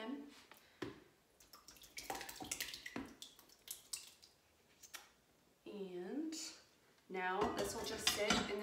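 Thick yogurt pouring and plopping from a stainless steel pot into a coffee-filter-lined strainer, with scattered clicks of the metal pot knocking against it. A short hummed vocal sound comes near three quarters of the way through, and speech begins near the end.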